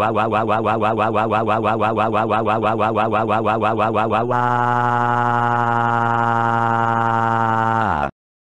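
Synthesized computer voice wailing 'wah' in a cartoon tantrum cry. For about four seconds it is a rapidly wavering wail. It then turns into one long held cry that sinks slowly in pitch and cuts off suddenly at the end.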